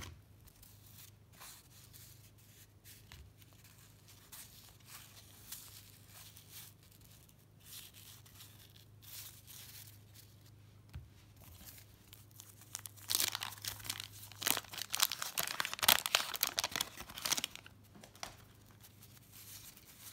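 A stack of 1990 Fleer cardboard trading cards being flipped and shuffled by hand: soft scattered card clicks at first, then, after about thirteen seconds, four or five seconds of dense, rapid scratchy rustling of card against card.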